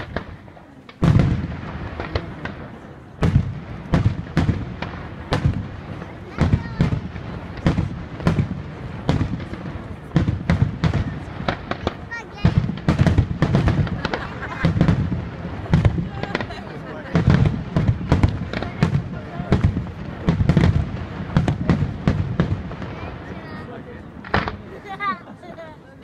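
Aerial firework shells bursting in a rapid barrage, with sharp reports and deep booms about once or twice a second. The barrage starts abruptly about a second in.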